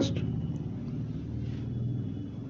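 Steady low mechanical hum in a pause between spoken phrases, with the tail of a spoken word at the very start.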